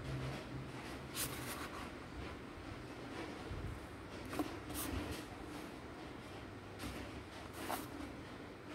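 Faint handling of a plastic ruler and protractor on a workbook page, with about five short scrapes and taps as they are shifted and set against the pen.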